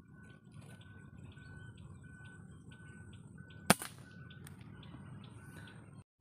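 Faint chirping of birds throughout, with one sharp rifle shot a little past midway, fired at a bird perched in a tree.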